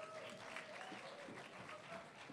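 Audience applauding, fairly faint, with a voice calling out over the clapping.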